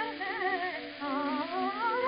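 Soprano singing with accompaniment on a 1908 acoustic-era recording, thin and cut off at the top, in a softer wavering passage with a line climbing in pitch through the second half.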